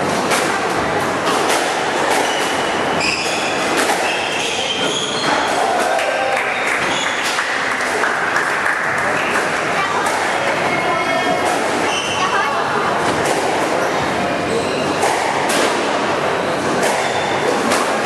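Squash rally: the ball is struck sharply by rackets and smacks off the front wall and the wooden floor again and again, with rubber-soled shoes squeaking on the court.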